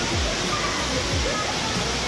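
Waterfall pouring into a pool: a steady, even rush of falling water, with faint voices of people in the water beneath it.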